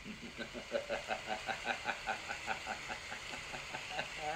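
A voice laughing in a long, even run of quick pulses, about five a second.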